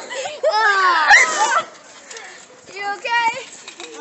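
Children's high-pitched voices squealing in play, loudest in the first second and a half, then a child saying "okay".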